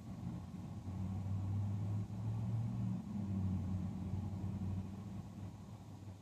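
A motor vehicle's engine, a low hum that swells over the first couple of seconds, stays loud through the middle and fades again near the end, as a vehicle passing by on the street.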